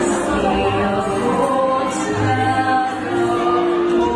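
Women singing through microphones over amplified musical accompaniment, holding long sustained notes.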